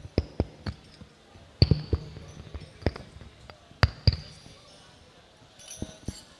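Banjari frame drums (terbang) struck sparsely and irregularly: about nine single and paired hits, each a low thump with a short bright ring, not yet in a steady rhythm.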